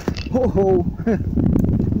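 A short vocal exclamation, then about a second of loud rough scuffing and rustling as a person stumbles while pushing through snowy brush, nearly falling.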